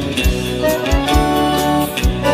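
Instrumental passage of live sertanejo music: accordion and electric guitar melody over bass and percussion, with a steady beat.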